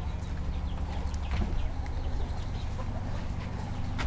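Chickens clucking faintly, in short scattered calls over a low steady rumble.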